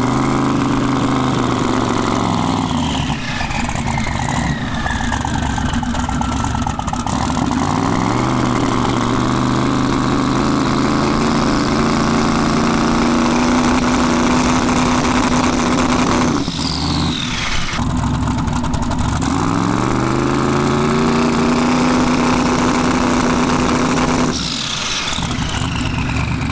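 Twin-turbo LS V8 in a fourth-generation Camaro held on its two-step launch rev limiter twice. Each time the revs rise, hold at one steady pitch for several seconds, then drop with a falling whistle. This is a two-step check after a switch from pump to race fuel: it comes up rough at first and comes up all right once it has cleared out.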